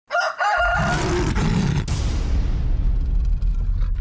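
Sound effects for an erupting-volcano scene: a brief rooster-like crowing call, then a low, steady rumble with a sharp crack about two seconds in. After the crack the hiss above the rumble thins out.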